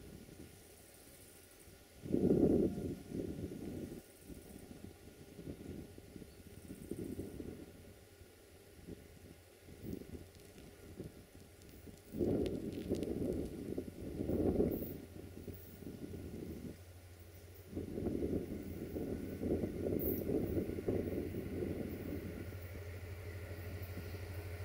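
Diesel locomotive 65-1300-6 approaching at low speed, its engine a low steady hum that grows louder over the last several seconds. Gusts of wind buffet the microphone on and off, loudest about two seconds in.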